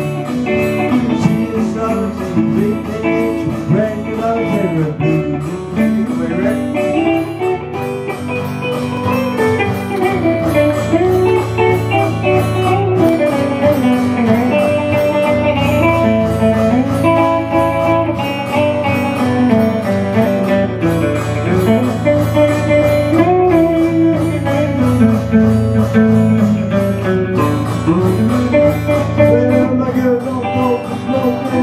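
An instrumental blues break played live on a hollow-body electric guitar and an acoustic guitar, with lead lines over a steady low bass.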